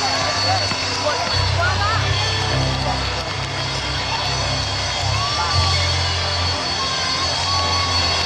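Live gospel band playing a slow, stepping bass line under held chords, with a lead singer's gliding, wordless vocal runs over it.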